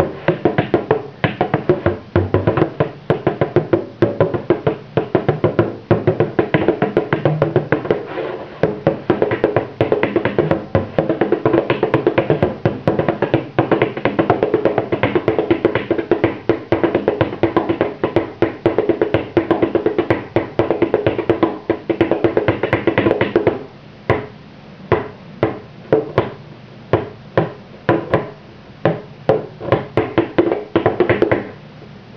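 Bodhrán (Irish frame drum) played with a tipper in a fast, continuous jig/reel-style rhythm. About three-quarters of the way through, the pattern changes to sparser, evenly spaced strokes, roughly two a second.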